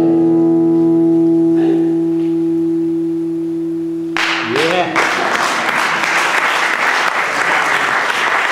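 Harmonica on a neck rack holding one long sustained chord, which stops about halfway through. An audience then breaks into applause that carries on to the end.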